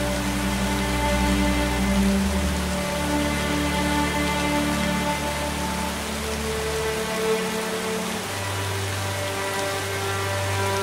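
Slow ambient music of long held notes whose chord shifts every few seconds, over the steady splashing of a small waterfall falling into a pond.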